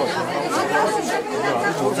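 Several people talking at once: overlapping speech and chatter from a small crowd.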